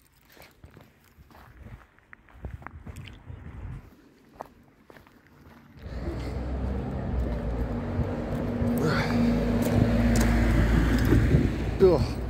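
Footsteps crunching on gravel, faint at first. About six seconds in, a loud steady road-vehicle noise rises and holds, with a steady engine tone for a few seconds in the middle.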